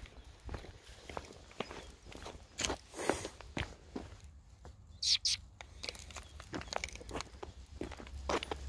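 Footsteps on brick paving as a person walks a small terrier on a leash, an uneven run of soft steps. About five seconds in come two short, high hissing sounds.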